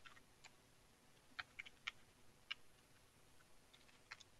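A few faint computer keyboard keystrokes, about six scattered clicks, over near silence.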